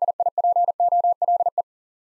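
Morse code sidetone, a single steady pitch near 700 Hz keyed on and off in dots and dashes, sending the word "DIPOLE" at 40 words per minute. It stops about 1.6 seconds in.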